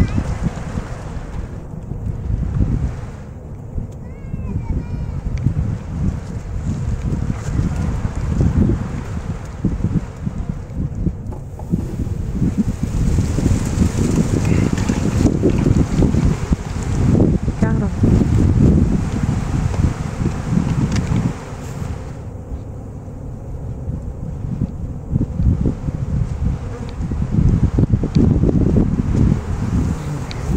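Gusty wind rumbling hard on the microphone, with honey bees from a swarm buzzing around as they are shaken and gathered into a nuc box.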